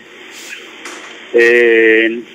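A man's voice: a pause, then a drawn-out, steady 'eee' hesitation sound for the last half second or so.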